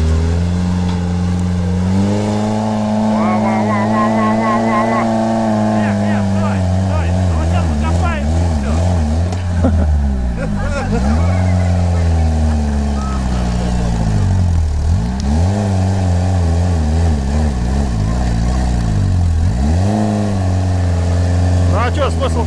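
Off-road buggy's engine revving hard under load, its pitch dropping and climbing again several times as it tries to climb a steep loose-dirt slope, tyres digging in.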